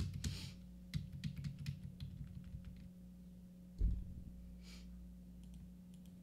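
Computer keyboard typing: a quick run of keystrokes and clicks in the first two seconds, a dull thump near four seconds, then a few more taps, over a steady low electrical hum.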